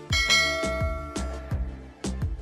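A bright bell chime, a notification-bell sound effect, rings once just after the start and fades out over about a second and a half. Background music with a steady beat of about two hits a second runs under it.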